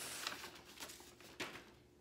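Brown kraft paper wrapping rustling and crinkling as a parcel is opened by hand, with a few short crackles, dying away near the end.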